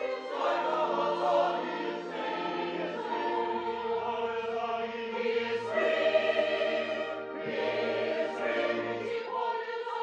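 Operetta chorus singing, led by women's voices, with an orchestra accompanying.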